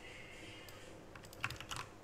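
Computer keyboard clicks: a quick run of several keystrokes over about a second in the second half, the loudest near the middle.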